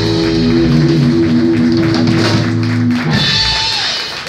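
Live electric guitar, electric bass and drum kit holding a sustained final chord, closing with a last accented hit and cymbal wash about three seconds in.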